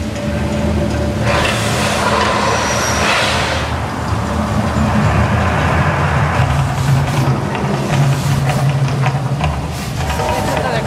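Mirage volcano show erupting: a deep, steady rumble with a hissing whoosh as the flames burst, starting about a second in and dying away within about three seconds.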